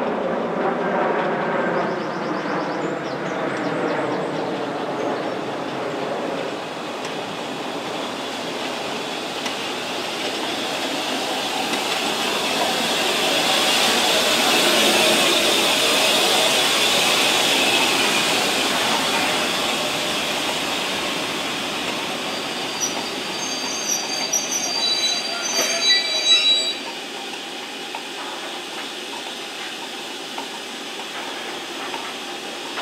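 LMS Royal Scot class 4-6-0 steam locomotive 46100 and its coaches rolling into a station to stop. The running noise swells as the engine passes close by near the middle, then there are high, intermittent squeals of the braking wheels a few seconds before the end as the train comes to a halt.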